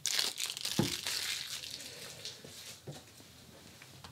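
Cellophane wrapper being torn open and crinkled off a deck of playing cards. It is loudest in the first second and dies away by about three seconds in.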